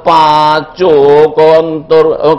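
A man chanting Arabic in long, held tones through a microphone: the melodic recitation of a hadith.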